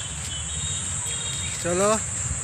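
A steady, high-pitched chorus of insects, with a low rumble under it. A man's voice starts near the end.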